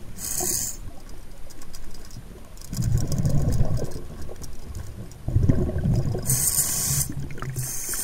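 Muffled underwater noise through a camera's waterproof housing as it is moved about: two longer low rumbling swells in the middle, with short sharp hissing bursts near the start and near the end.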